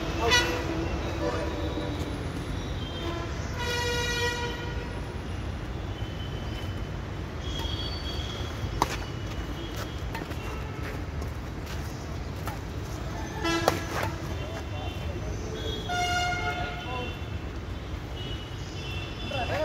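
Badminton rackets striking a shuttlecock, a few sharp clicks spread through the rally, over a steady low traffic rumble; a vehicle horn sounds twice in the background, about a second each time, near 4 s and again near 16 s in.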